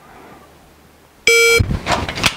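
MantisX shot-timer start beep from a phone speaker: one loud steady electronic tone about a third of a second long, coming a little over a second in after quiet room tone. It is followed at once by the quick clatter and rustle of a pistol being drawn from an appendix holster.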